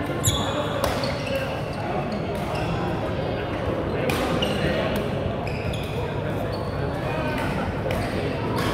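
Badminton rackets striking shuttlecocks: irregular sharp hits every second or so, echoing in a large sports hall, over a steady murmur of players' voices.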